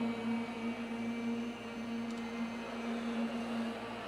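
A pause in choral singing: a steady low hum with faint hall noise beneath it.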